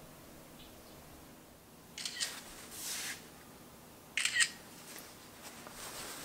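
Cell phone camera shutter sound, twice: a short burst of clicks about two seconds in and another about four seconds in, with a brief rustle between.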